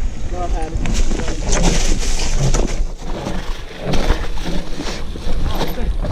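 Mountain bike riding down a dirt trail strewn with dry leaves: tyres rolling and crunching, with frequent clicks and rattles from the bike over bumps. Wind buffets the camera microphone with a steady low rumble.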